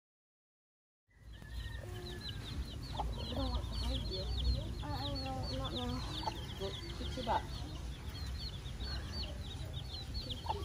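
Chicks peeping: a steady run of short, high, falling chirps, several a second, starting about a second in. Lower clucking calls from a hen come and go beneath them, over a low rumble.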